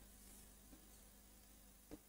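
Near silence: room tone with a faint steady electrical hum, and a faint tick near the end.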